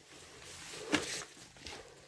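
Footsteps moving over rubble of broken roof tiles and wood, with one sharper crunch about a second in.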